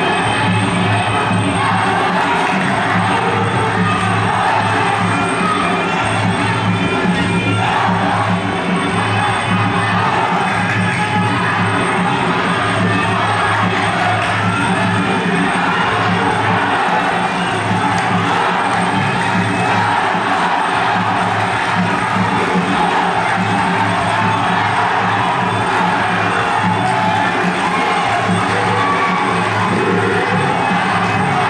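Traditional Kun Khmer ring music, the live oboe, drum and cymbal band that plays through a bout, running continuously at a steady level, with a crowd cheering and shouting over it.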